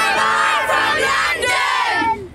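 A large group of children shouting together, many voices at once, loud throughout.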